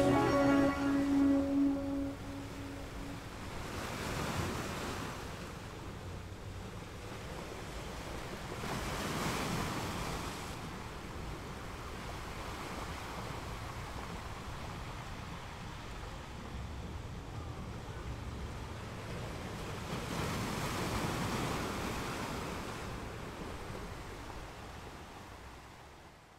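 Sea surf washing on a shore, faint, swelling and ebbing in slow surges several seconds apart, after a piece of music dies away in the first couple of seconds.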